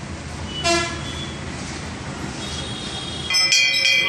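A short horn-like toot about a second in, over a low background rumble. Near the end a brass temple bell starts ringing loudly, struck rapidly again and again.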